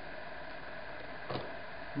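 Steady low hum of an electric potter's wheel running, with one brief faint sound about a second and a half in.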